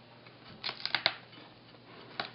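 Chef's knife cutting into a peeled yuca root on a cutting board to take out its fibrous core: a short run of crisp clicks and scrapes about half a second to a second in.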